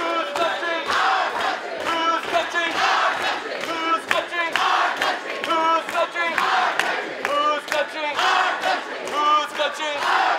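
A large crowd of protesters chanting and shouting together in loud, rhythmic unison.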